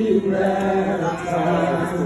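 Voices singing a slow hymn in long held notes.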